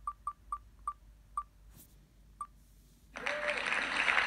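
Online spinning-wheel picker's tick sound effect as the wheel slows to a stop, about seven high clicks spaced ever further apart. A little after three seconds a loud burst of applause sound effect starts as the winner is picked.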